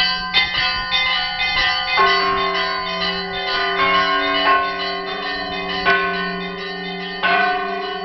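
Monastery church bells ringing: several bells of different pitches struck one after another at an uneven rhythm, each strike ringing on over the next. A deep bell's hum sounds steadily underneath.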